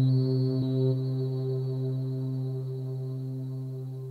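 Low sustained drone from an Elektron Digitone FM synthesizer through a reverb pedal, one steady pitch with a few overtones, slowly fading out. A faint high tone rides over it for about the first second.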